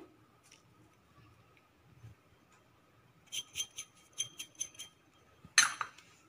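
A small steel bowl tapped to shake out asafoetida powder: a quick run of about eight light metallic clinks over a second and a half, a little after the middle. A single louder knock follows near the end.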